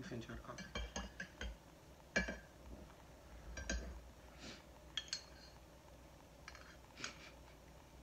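Spoons clinking against ceramic coffee mugs while stirring in creamer: a quick run of light clinks in the first second and a half, then single clinks every second or so.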